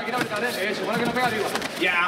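Indistinct voices calling out around the fight pit, fainter than the commentary, with a few small knocks.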